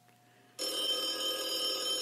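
A telephone ringing as an outgoing call is placed: one steady ring that starts suddenly about half a second in and holds.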